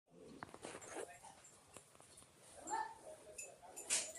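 A short animal call about two-thirds of the way in, among scattered clicks and knocks, with a sharper knock near the end.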